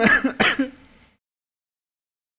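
A man coughing and clearing his throat in a few short, hard bursts, cut off suddenly about a second in.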